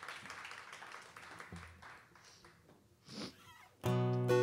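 Applause from a small audience dying away, then a brief high call from someone in the crowd about three seconds in. Just before the end an acoustic guitar starts strumming loudly.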